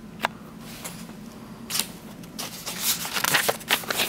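A paper page of a picture book being turned by hand: a single tick soon after the start, then paper rustling and crinkling from about halfway through.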